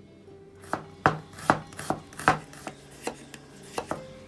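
Kitchen knife slicing a cucumber on a bamboo cutting board: a run of about ten sharp knocks of the blade on the board, two to three a second, starting under a second in.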